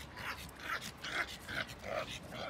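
Pug puppy making a run of short, repeated sounds, about three a second.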